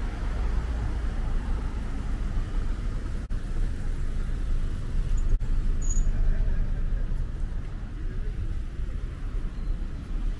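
City street traffic: a steady rumble of cars running along the avenue beside the sidewalk.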